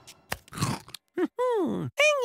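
Cartoon sound effects of a bite into a crunchy cookie: a knock, then a short crunch, followed near the end by a cartoon voice sound that slides down in pitch.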